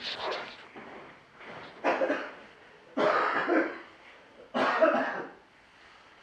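A person coughing: about four hard coughs a second or so apart, dying away about five seconds in.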